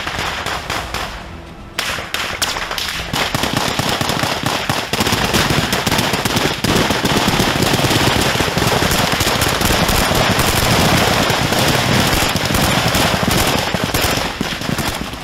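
Small-arms gunfire from assault rifles: a few scattered shots at first, then from about two seconds in a dense, continuous volley of automatic fire that keeps on loud to the end.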